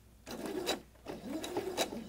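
Domestic sewing machine starting a seam slowly, stitching through fabric and a zipper tape in a few separate stitches, each marked by a tick, with the motor's pitch wavering between them.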